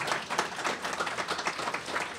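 Audience applauding, with many hands clapping steadily throughout.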